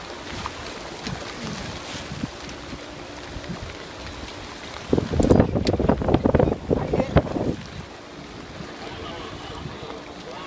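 Wind buffeting the microphone and water washing around a small boat, over the steady hum of its motor. From about five to seven and a half seconds in, a louder burst of rapid knocks and clatter.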